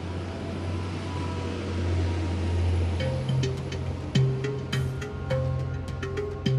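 Trenord diesel multiple unit pulling out of the station, its engine a steady low rumble. Music starts about halfway through and carries on.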